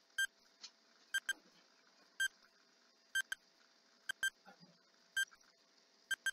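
Countdown timer beeping: one short, high beep each second, a few of them in quick pairs.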